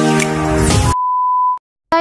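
Electronic intro music with sustained keyboard-like chords that cuts off about a second in, followed by a single steady electronic beep lasting about half a second, then a moment of silence.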